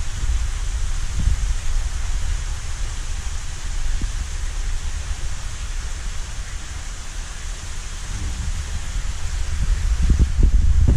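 Steady rushing, hissing water noise of a large aquarium's circulation and aeration, with an uneven low rumble underneath.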